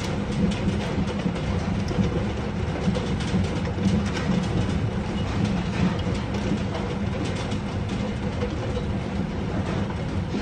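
Hail falling hard: a dense, continuous clatter of hailstones striking the paving and other hard surfaces, many small impacts at once over a steady low rumble.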